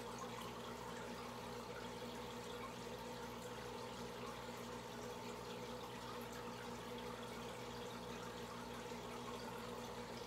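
Air-driven aquarium sponge filter bubbling steadily, with a steady low hum underneath.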